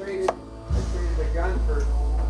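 A single sharp click a little after the start, as a metal cartridge is set down among others on a wooden shelf, followed by a steady low rumble and faint voices in the background.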